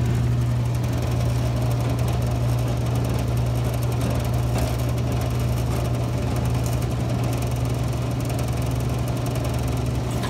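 Brake booster test machine's motor running with a steady low hum while the booster on it is checked for holding vacuum.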